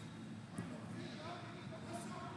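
Indistinct voices and chatter echoing around a large sports hall, with a brief knock about half a second in.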